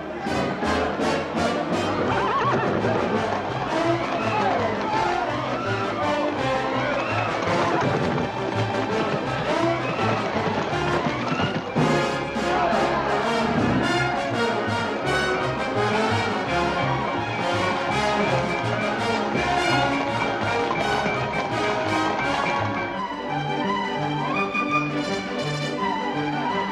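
Orchestral film score with brass playing a fast, driving chase theme over a quick, even beat. It turns lighter and quieter near the end.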